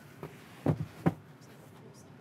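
Light knocks and bumps from the hinged, padded extension panel of a motorhome's cab-over bunk as it is swung down by hand into its bed position. There are three short knocks within about the first second.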